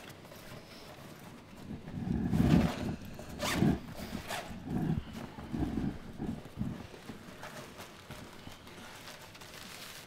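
Fabric rustling and handling noises with a zipper being opened, as a package is dug out of a jacket or bag; a run of irregular scuffs and rubs in the middle of the stretch, the loudest about two to four seconds in.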